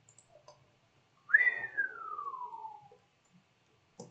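Someone whistles one long falling note. It starts high about a second in and slides steadily down over about a second and a half.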